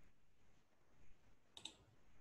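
Near silence broken by a faint, quick double click about one and a half seconds in.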